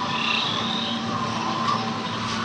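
Steady chorus of frog-like creature calls from a theme-park dark ride's rainforest soundscape, over a low steady hum.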